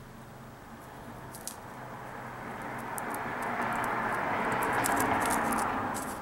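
Small dry crackles of a tobacco-leaf blunt wrap being handled and unrolled between the fingers, over a soft rushing sound that swells for a few seconds and fades near the end.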